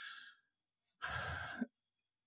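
A man breathing close to the microphone between sentences. A breath trails off at the start, there is a dead-quiet gap, then another breath about a second in ends with a small mouth click.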